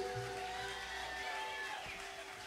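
The last chord of a live band song ringing out and fading after the final drum hits: a held note lingers faintly while the low rumble dies away about a second in.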